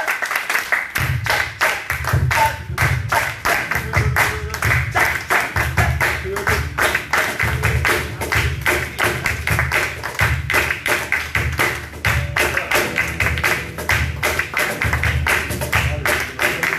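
Group hand-clapping in a quick, steady rhythm over strummed acoustic guitar, with a deep thumping beat joining about a second in, as live accompaniment for passinho dancing.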